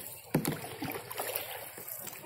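Lake water lapping against the hull of a small boat on the move, with a single sharp knock about a third of a second in.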